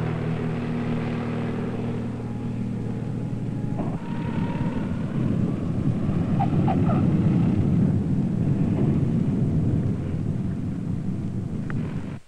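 Piper Comanche 250 single-engine propeller plane with a steady engine drone. About four seconds in, the even tone gives way to a rougher, noisier engine sound as the plane is on the runway.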